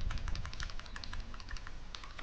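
Computer keyboard keys tapped in a rapid, irregular run of clicks, several a second, with a low thump at the start.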